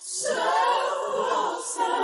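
Unaccompanied gospel choir singing, voices holding notes together after a brief breath at the start, with a new phrase coming in near the end.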